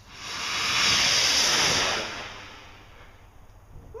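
Homemade gunpowder rocket motor igniting and burning with a hiss that builds over the first second, holds, then fades over about a second as the rocket flies off.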